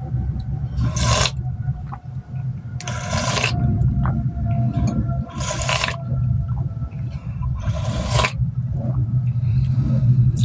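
A person slurping liquid from a bowl held to the mouth: four short slurps about two to three seconds apart, over a steady low hum.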